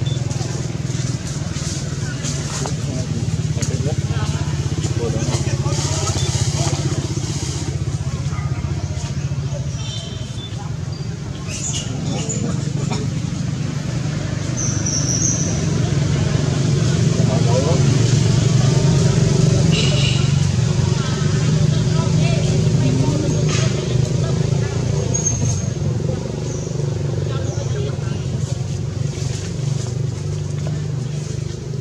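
A steady low engine hum runs throughout, a little louder in the middle, with faint people's voices in the background and a couple of brief high chirps.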